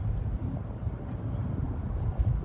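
Steady low rumble of road and running noise inside a moving car's cabin.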